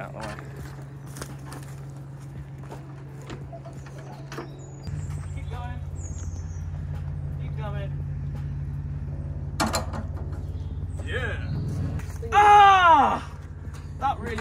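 A vehicle engine idling with a steady low hum, which settles into a deeper, louder note about five seconds in, with scattered clicks and knocks over it. Near the end a short, loud, pitched squeal stands out above the engine.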